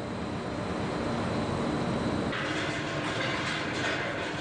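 Industrial plant machinery running: a steady, continuous mechanical din. About two seconds in it changes to a brighter, harsher noise, as at the shot of a conveyor carrying crushed rock.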